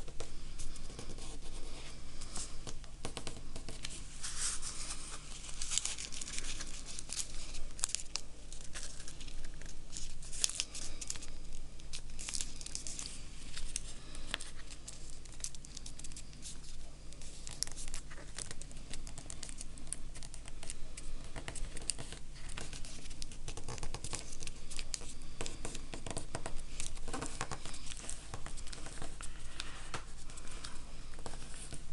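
Origami paper being folded and creased by hand: irregular crinkling and rustling as the multi-layered, stiffening folds are pressed flat.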